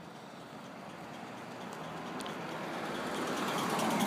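A car drawing close, its engine and tyre noise growing steadily louder.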